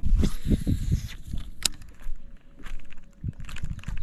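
Handling noise aboard a fishing boat: low thumps and rustle with a short hiss in the first second, then one sharp click about a second and a half in and a few softer knocks.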